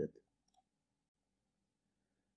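A single faint computer mouse click about half a second in, then near silence.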